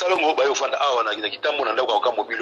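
A person speaking, with a brief pause about one and a half seconds in.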